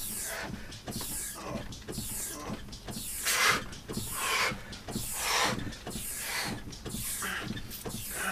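Hard, heavy breathing, about one breath a second, after an all-out Tabata interval on an upright hydraulic rowing machine. Small knocks from the machine are mixed in.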